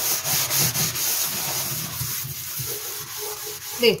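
Scrubbing a wet stainless steel sink by hand: rapid back-and-forth rubbing strokes that ease off in the second half.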